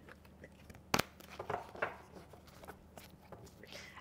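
Tarot cards being handled and turned over: a sharp tap about a second in, then faint rustling and light clicks of the cards.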